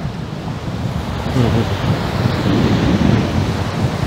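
Strong sea wind buffeting a clip-on lapel microphone, a loud, gusting low rumble, over the wash of small waves breaking on a sandy beach.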